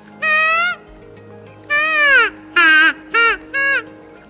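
Gunbroker FC08 open-reed predator call blown by mouth: five short cries at different pitches, the second sliding downward, the third the lowest, the last two brief. The pitch is set by where the lips grip the open reed, lower nearer its end and higher nearer the mouthpiece.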